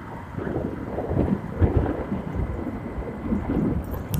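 Wind buffeting the microphone on a moving motorcycle: an uneven low rumble that swells and drops in gusts.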